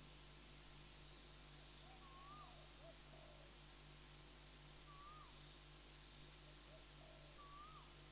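Near silence: room tone with a steady low hum. A faint bird whistle, a short note that rises and then drops, comes three times about every two and a half seconds, with softer lower chirps between.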